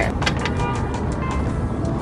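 Background music with a low, steady rumble under it and a few light clicks.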